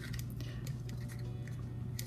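Faint handling of a paper cup and a hand-held hole punch: a few small ticks and rustles over a steady low hum.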